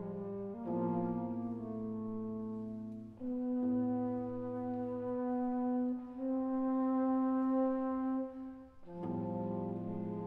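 Contemporary chamber music for alto flute, baroque alto trombone and classical guitar: several long held notes that overlap and change every second or two, led by a brass tone. There are short dips between phrases about three seconds in and near the end.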